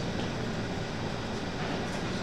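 Steady room noise with a low hum throughout.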